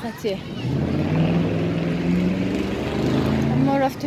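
A motor running with a steady low hum for about three seconds, with brief talk at the start and near the end.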